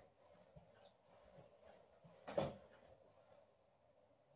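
Quiet room tone, with one short, soft noise a little over two seconds in.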